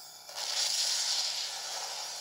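An advert soundtrack playing through a portable DVD player's small speaker: after a brief dip it swells suddenly about a third of a second in into a high, hissing shimmer.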